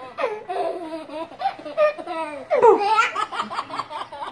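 A baby belly-laughing in a string of short, high-pitched bursts, loudest about two and a half seconds in.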